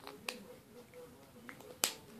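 A few short, sharp clicks, the loudest near the end, as plastic lipstick tubes and caps are handled and set down.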